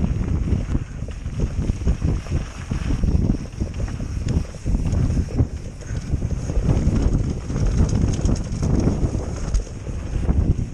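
Wind buffeting a helmet-mounted camera's microphone as a mountain bike rolls along a dirt trail, with a low rumble of the tyres on dirt that rises and falls in gusts; a few faint clicks or rattles near the end.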